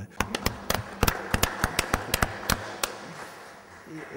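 Brief scattered applause from a small audience: a few people clapping, thinning out after about three seconds.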